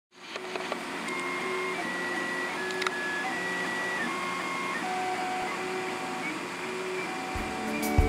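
Desktop FDM 3D printer's stepper motors running, whining in steady tones that jump from pitch to pitch as the print head changes moves. Music with low beats comes in near the end.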